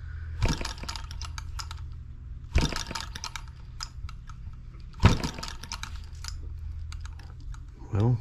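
Small brass single-cylinder model engine being flipped over by hand three times. Each flip is a sharp knock followed by a quick run of clicks as it turns over without firing, its nitro-type carburetor flooded with fuel.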